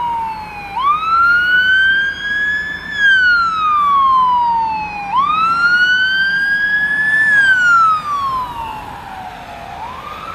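Emergency vehicle siren sounding a slow wail. It rises about a second in and again about five seconds in, each time climbing quickly and then more gradually to its peak before sweeping steadily back down. It grows fainter over the last two seconds.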